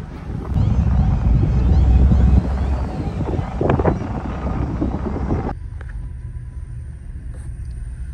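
Wind buffeting the microphone with a low rumble on the open deck of a car ferry, loudest a second or two in. About five and a half seconds in it cuts off suddenly to a quieter, steady low hum heard from inside a car.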